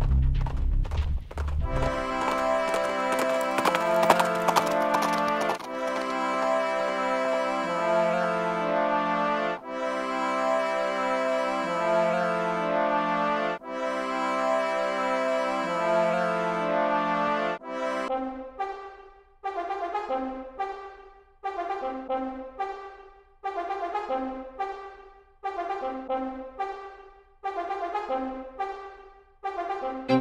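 Epic cinematic orchestral music led by brass. After a low pulsing opening, long held brass chords shift every couple of seconds; past the middle the music turns to short, punched chords repeating about once a second.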